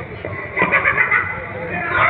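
Shrill, loud vocal cries from the actor playing the demoness Tadka, coming through the stage sound system and bending up and down in pitch.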